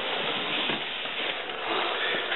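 Steady hissing rustle of handling noise as the camera is moved.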